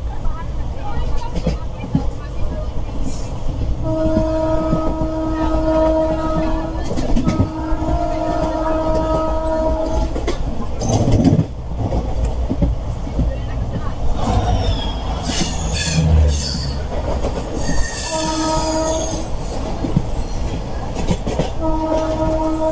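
Express train running at speed on an electrified line, the coach rumbling steadily. A locomotive horn sounds two long blasts, about four to ten seconds in, a short one near eighteen seconds, and another beginning at the end. An oncoming train passes close alongside in the second half with a rising rush of noise.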